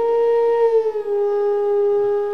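Bansuri (bamboo transverse flute) holding a long note that slides gently down a step about a second in and settles on the lower pitch.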